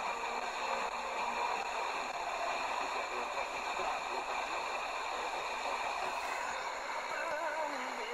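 Tecsun PL-310 portable receiver on a weak, fading sporadic-E FM signal in the OIRT band: mostly hiss, with only faint traces of the broadcast left. About six seconds in, a short burst of noise comes as the radio is retuned, followed by a wavering tone near the end.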